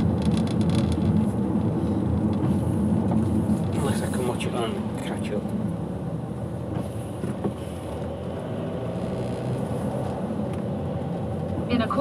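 Car driving on a wet road: a steady rumble of engine and tyres, easing slightly as the car slows.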